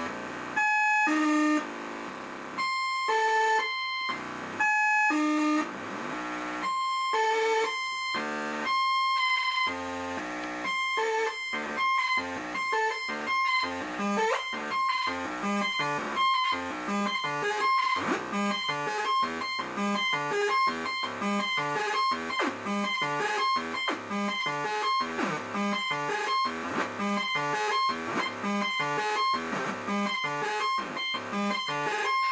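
Homemade eight-step sequencer built from 555/556 timer chips, playing buzzy square-wave tones. It steps slowly at about one note a second, then about ten seconds in it speeds up to several notes a second in a repeating pattern, with pitches shifting as its knobs are turned.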